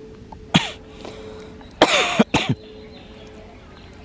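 Monkeys giving short, harsh, cough-like calls: one about half a second in, then two close together around two seconds in.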